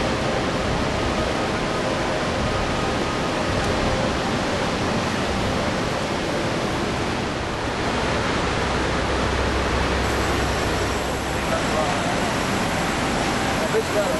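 Steady rushing roar of a river's white water in a rock gorge, with voices faintly under it.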